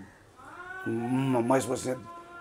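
A short high call that rises and then falls, a little under a second long, followed by a man speaking.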